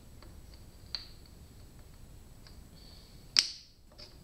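Small clicks of a piston and connecting rod being handled and fitted among an engine's cylinder studs, with one sharp metal click near the end.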